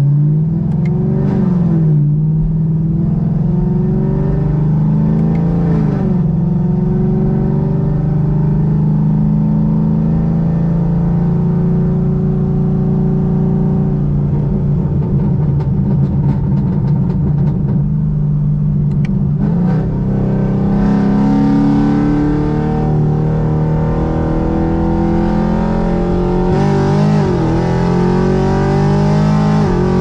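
Chevrolet Camaro SS's 6.2-litre V8, freshly tuned, heard from inside the cabin as the car accelerates from a near stop up to highway speed. The engine note climbs and falls back several times as it shifts up through the gears.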